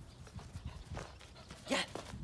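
Soft, irregular footfalls on grass and dirt: a person's steps and a Belgian Shepherd puppy's paws as the two move about together.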